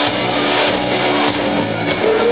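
Live hard rock band playing loudly, with electric guitars to the fore.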